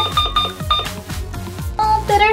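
Digital toy blender's timer beeping in a rapid string of short beeps as its seconds are set, stopping a little under a second in. Background music with a steady beat continues underneath.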